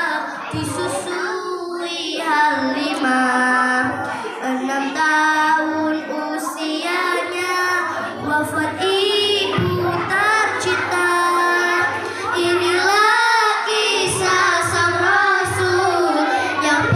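Young girls singing into a microphone through a loudspeaker, a devotional song with long held notes that waver and glide.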